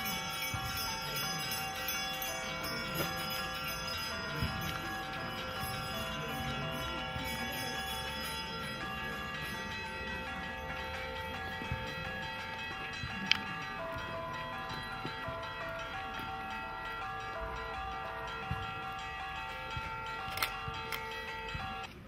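Church bells ringing continuously, a steady blend of several sustained, overlapping bell tones that shifts only a little through the stretch.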